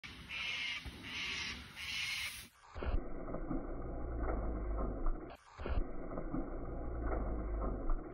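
Mountain bike tyres rolling and scrabbling over a dirt track under a steady low rumble, sounding dull and muffled. The run is heard twice, each time after an abrupt cut. In the first couple of seconds there are three short hissy pulses, evenly spaced.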